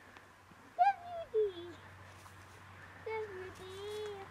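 A person's voice making two short drawn-out exclamations, the first about a second in sliding down in pitch, the second held level near the end.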